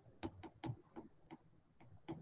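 Faint, irregular ticks of a stylus tip tapping and sliding on a tablet's glass screen during handwriting: a handful of light clicks, unevenly spaced.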